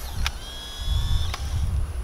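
Instant camera taking a picture: a shutter click, then the film-eject motor whirring with a steady high whine for about a second as it pushes out the print, ending in a second click. A low rumble runs underneath.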